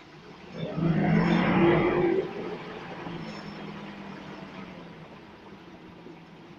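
Scania L94UB bus's diesel engine heard from inside the passenger saloon, running loud for about a second and a half as the bus accelerates, then dropping back abruptly to a quieter steady drone that slowly fades.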